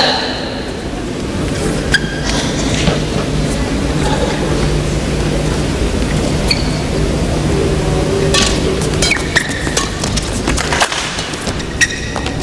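Indoor badminton hall ambience between points: a steady low hum with scattered light clicks and knocks, more of them near the end as play resumes.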